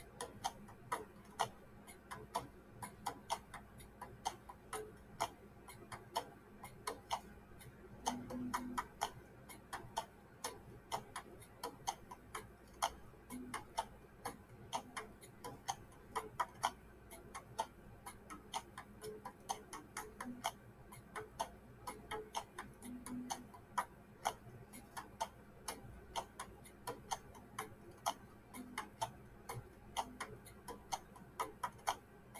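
Light ticking clicks, two to three a second at uneven spacing, with a few faint short low notes.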